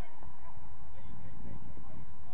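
Distant shouts and calls of football players across an outdoor pitch, short rising and falling calls over a low, uneven rumble.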